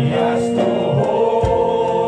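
A group of men singing a gospel worship song together into microphones, holding long notes.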